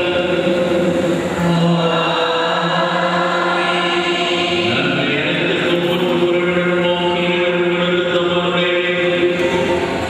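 Liturgical chant sung at Mass: voices holding long, steady notes, one sustained pitch after another.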